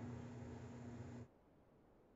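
Near silence: faint room tone with a steady low hum, which cuts off abruptly a little over a second in, leaving dead silence.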